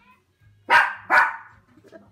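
A dog barking twice, two sharp barks about half a second apart.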